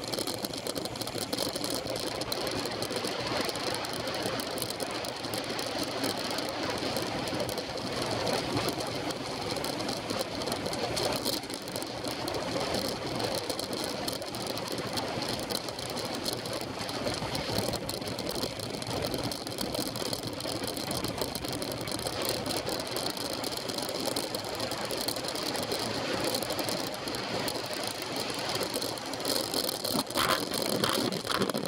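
Riding noise picked up by a camera mounted on a moving road bike: a steady rush of wind and tyres on tarmac, with a fast, continuous rattling buzz from the camera and bike vibrating over the road.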